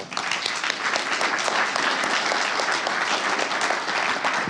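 Audience applauding: a steady patter of many hands clapping that begins at once and fades just after the end.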